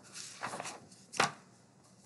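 Handling noises: a short rustle, then a single sharp knock about a second in.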